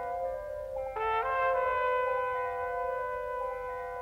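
Soundtrack music with sustained brass chords; a new, higher chord comes in about a second in and is held.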